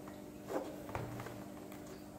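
Handling noise from a small cardboard box being turned over in the hands: two short taps about half a second and a second in, over a steady low hum.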